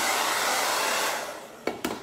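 Handheld hair dryer blowing steadily to dry a coat of paint, then switched off about a second in and winding down. Two sharp knocks follow as it is set down on the table.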